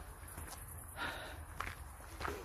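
Footsteps of a person walking on a paved path, with a steady low rumble from the handheld recording underneath.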